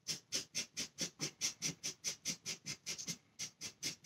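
Felt-tip marker scribbling back and forth on a paper towel, a quick, even run of scratchy strokes at about five a second.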